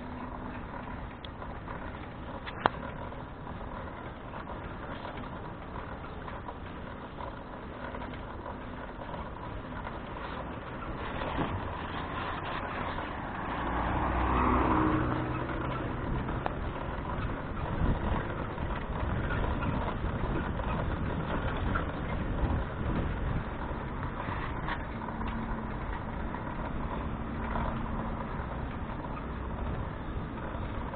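Street traffic and riding noise picked up on a bicycle-mounted camera: a steady rumble and hiss. There is a single sharp click a little over two seconds in, and a louder swell around the middle.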